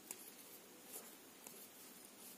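Knitting needles and yarn being worked by hand while stitches are knitted: a few faint clicks and light rubbing over near-silent room tone.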